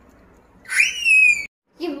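A short high-pitched whistle a little over half a second in: it sweeps quickly up, then slides slowly down for under a second and cuts off abruptly.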